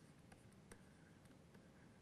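Near silence, with a few faint clicks of a stylus tapping and writing on a pen tablet.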